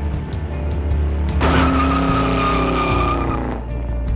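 Car tyres screeching in a hard braking skid, a high squeal that starts suddenly about a second and a half in and fades after about two seconds, over background music.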